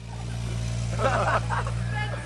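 Kubota mini excavator's diesel engine running steadily, with people's voices faintly over it.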